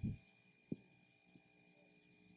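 Faint room tone in a pause between phrases: a steady thin high-pitched hum with one soft knock a little under a second in.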